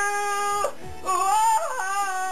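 A male singer's voice singing a ballad live: a long held note ends about two-thirds of a second in, a short break for breath, then he slides upward into the next note.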